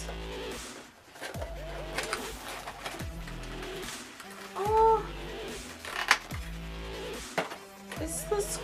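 Background music with steady held tones, under light crinkling of a clear plastic bag being handled. About five seconds in comes a short pitched voice sound, rising and falling, the loudest moment.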